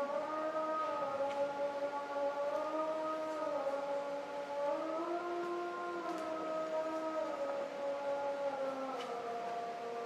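A woman's voice singing long, held wordless notes into a microphone, the pitch stepping up and down to a new note every second or few with no break for breath.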